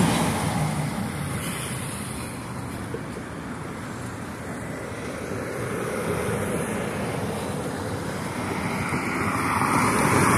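Road traffic passing close by on a multi-lane street: steady tyre and engine noise, easing off in the middle and swelling again near the end as another vehicle approaches.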